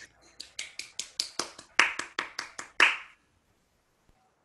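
A single person's hands clapping in a quick, even rhythm of about five claps a second, which stops about three seconds in.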